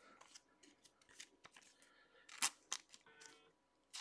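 Faint clicks and light rustles of a trading card being handled and slid into a thin plastic sleeve, with two sharper clicks about two and a half seconds in.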